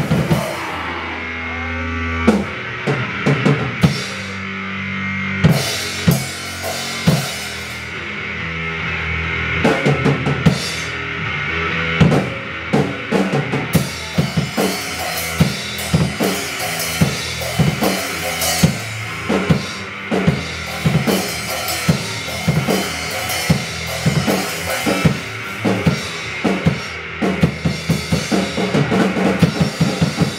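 Raw punk noise trio playing live: held bass notes and a synthesizer layer under a drum kit. The drum strikes are sparse at first and come faster and denser through the second half.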